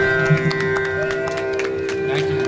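Live Indian instrumental music: sitar strings plucked in quick sharp notes over a steady, sustained drone.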